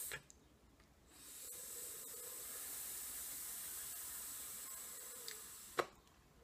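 A long, hard draw on a Fogger V4 dual-coil rebuildable atomizer while it fires: a steady high hiss of air and vapour pulled through the open airflow for about five seconds. The draw is kept aggressive to keep the wicks wet and the juice feeding the coils. It ends suddenly with a short click.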